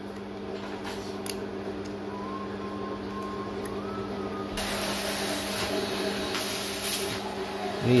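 A steady low machine hum, with a faint hiss joining about halfway through. One or two faint metal clicks come from a ring spanner on the starter motor's bolts.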